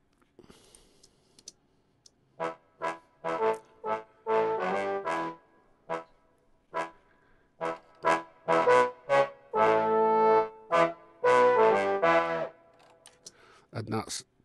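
Sampled big-band trumpet section from a Kontakt instrument playing back in Logic Pro, in the key of E. After about two seconds of quiet it plays a run of short chord stabs and longer held chords, stopping shortly before the end.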